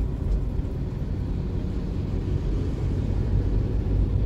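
Steady low rumble of a car driving slowly, heard from inside the cabin: engine and tyre noise on smooth, freshly laid asphalt.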